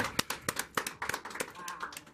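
A few people clapping, with fast, uneven claps.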